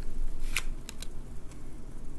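Tarot cards being handled and laid down on a wooden tabletop: a few sharp card clicks, the loudest about half a second in.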